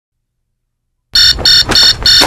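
An electronic alarm beeping in quick, even pulses, about three short multi-pitched beeps a second, starting about a second in.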